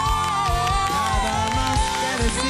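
Live pop ballad sung by young voices: two voices hold long notes in harmony over a band with a steady drum beat, and the upper voice lets go of its note a little past the middle.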